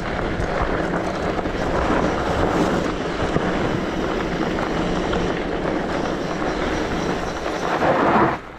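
Tyres of a Specialized Turbo Levo electric mountain bike rolling over a gravel track, a steady rough rumble mixed with wind on the microphone.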